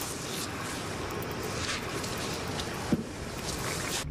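Steady rushing outdoor background noise with no voices, and one sharp click about three seconds in.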